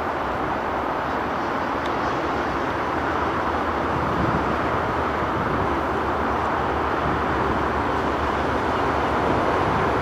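Class 37 diesel-electric locomotive's English Electric V12 engine running with a steady drone, swelling slightly about four seconds in.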